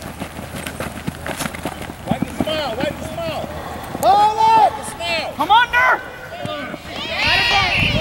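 Several voices shouting and yelling wordlessly during a flag football play, starting about two seconds in. The shouts are loudest around the middle, ending in one long, high yell near the end.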